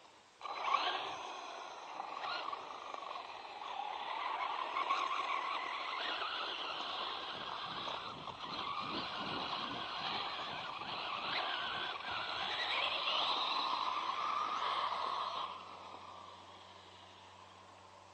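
ZD Racing Pirates 2 MT8 RC monster truck driven hard over dirt: its motor and drivetrain whine, rising and falling in pitch with the throttle, over a rough scraping of tyres. It starts abruptly just after the start and cuts off suddenly a couple of seconds before the end.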